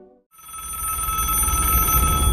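A rotary telephone's bell ringing, a steady high-pitched ring that starts about a third of a second in, over a low rumble that grows louder.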